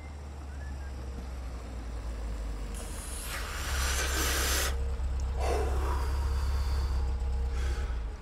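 Car sound effect of a vehicle arriving and pulling up: a low engine rumble grows louder, with a hissing rush partway through.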